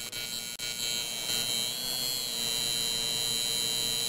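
Electric buzzing hum of a neon-sign sound effect. It starts suddenly, drops out briefly twice in the first second, then holds steady.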